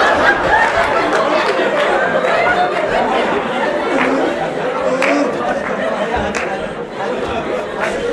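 Several voices talking over one another in a large hall, a steady babble with no single clear speaker, and a few light knocks.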